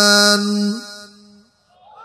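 A man's chanted, sustained vocal note, the held end of a sung phrase in a sermon, breaking off under a second in. Then only a faint hall echo remains.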